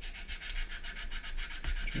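Small sanding stick rubbing in quick short strokes over a filler-covered seam on a plastic model aircraft, taking the filler down flush with the surrounding plastic.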